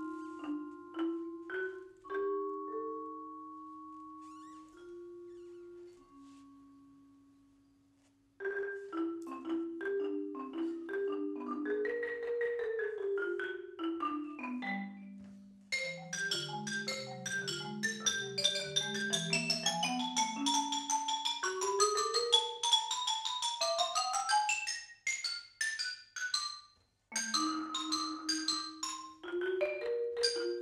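A marimba and a second mallet keyboard instrument playing as a duo. A few ringing notes die away to a near-silent pause about eight seconds in. Then a fast passage of rapid mallet strokes runs down into the low register and climbs high, with brief breaks near the end.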